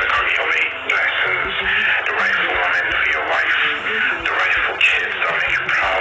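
A man speaking continuously, his voice thin and narrow like a phone call, with faint music beneath.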